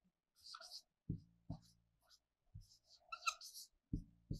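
Marker pen writing on a whiteboard, faint: short scratchy strokes about half a second in and again near the end, the later one with a brief squeak, and four dull taps of the pen against the board.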